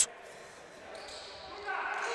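Faint sound of an indoor futsal game in play, heard in a large echoing sports hall: ball touches and players' movement on the wooden floor. It gets a little louder near the end.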